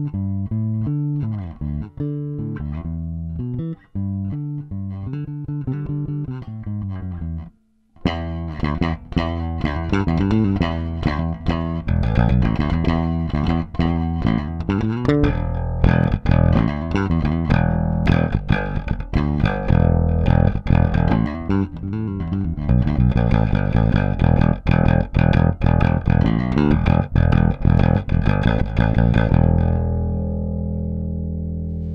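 KliraCort Jazz Bass electric bass played with the fingers, a run of plucked notes. The first eight seconds are softer and duller. After a brief stop the playing turns harder and brighter, with sharp percussive attacks on the notes.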